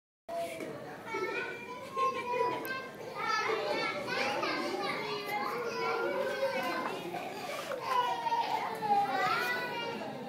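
Several young children's voices chattering and calling out over one another without a break.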